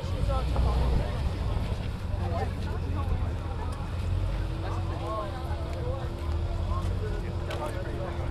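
Chevrolet Corvette's V8 running at low speed as the car drives slowly away, a steady low rumble under crowd chatter.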